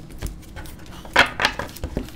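Trading cards and a foil card-pack wrapper being handled on a table: a few short clicks and crinkles, the loudest cluster just over a second in.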